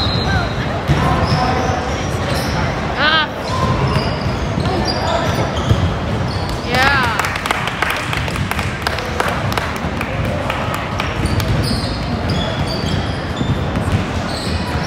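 A basketball bouncing on a hardwood gym floor with players' footsteps, in an echoing hall. Sneakers squeak on the floor about 3 s and 7 s in, and the bouncing and footfalls are busiest around the middle as play runs up the court.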